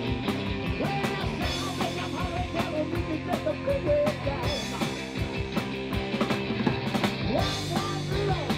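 Live rock and roll band playing with drum kit and electric guitar, a man singing lead over it through a handheld microphone.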